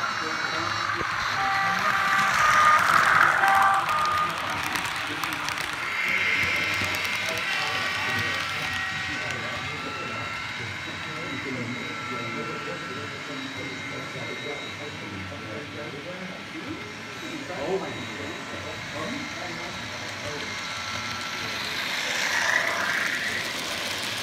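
Model railway diesel locomotive and its train of open wagons running along the layout's track, with several steady tones throughout and indistinct voices in the background.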